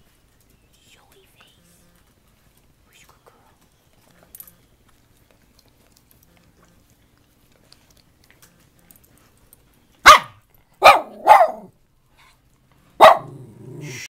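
Schnauzer barking: four loud, sharp barks near the end, three close together and a fourth about two seconds later.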